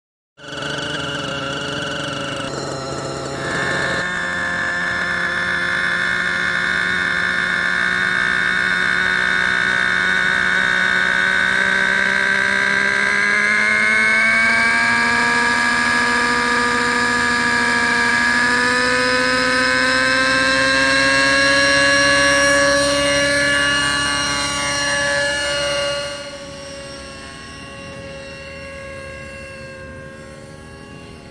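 Align T-Rex 600N RC helicopter's nitro glow engine running at a high, steady whine. It steps up in pitch and loudness a few seconds in and rises again past the midpoint as the helicopter spools up and lifts off. About four seconds before the end it drops sharply in loudness as the helicopter climbs away.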